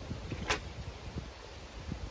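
Low, uneven rumble of wind and handling noise on the microphone, with one sharp click about half a second in.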